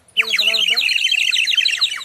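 Reddish-brown clay water warbler whistle blown in a fast trill of short falling chirps. The trill starts about a fifth of a second in and stops just before the end.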